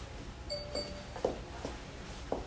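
Two short, high chime notes about a quarter second apart, like an electronic doorbell or entry chime, followed by two soft knocks in the second half.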